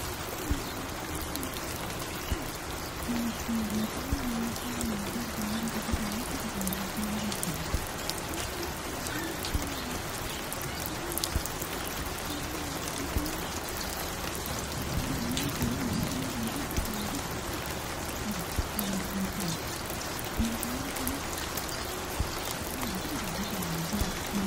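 Steady rain with scattered sharp clicks, and a faint muffled tune wavering underneath.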